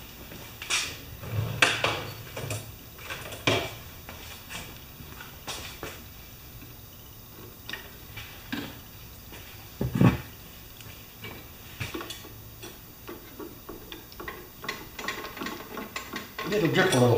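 Intermittent metallic clinks and knocks of hand tools being handled and worked at a small mower engine, with one louder knock about ten seconds in and a cluster of quicker clicks near the end.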